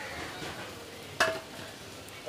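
Paneer cubes frying in a steel wok with a steady, quiet sizzle, and one sharp metallic clink against the pan a little over a second in, ringing briefly.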